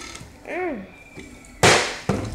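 A partly filled plastic water bottle flipped and slamming down onto a tabletop about a second and a half in: one sharp, loud thud with a short ring, the bottle landing upright. Earlier, a short hummed vocal "mm" rising and falling in pitch.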